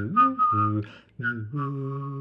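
A man's voice and whistling performing a slow melody together: low sung notes with scooping slides, a short break about a second in, then a long held note.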